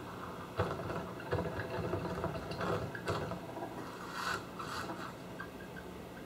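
A balsa RC model biplane's airframe bumping and scraping across grass with its engine dead after a dead-stick landing. There are irregular knocks and rubbing from about half a second in, as the plane tips over onto its back.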